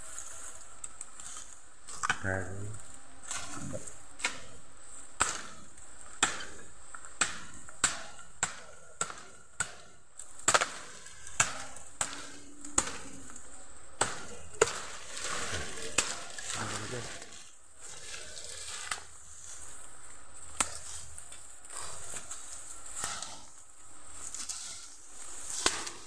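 A blade hacking at bamboo stems: a long run of sharp chopping strikes, one or two a second, thickest in the first half and thinning out later. Wind is stirring the bamboo leaves, which rustle throughout.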